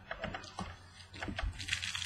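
2017 Optic baseball cards being handled on a table: a run of light clicks and rustles as cards are flipped and set down, busier near the end.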